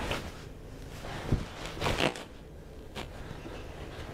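Contact sounds of a fast Kenpo self-defense technique between two partners: sharp slaps of a block and hand strikes, with uniform rustle and bare feet stepping on mats. The hardest hit comes about a third of the way in, a quick pair follows near the middle, and a lighter one comes about three seconds in.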